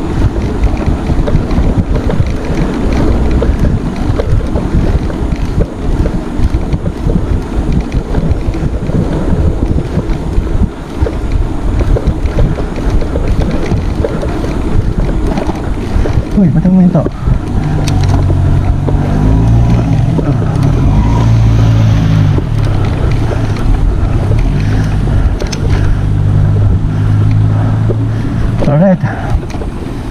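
Wind buffeting a bike-mounted action camera's microphone while riding at speed on a road. About halfway through, a low steady hum joins the noise and stops shortly before the end.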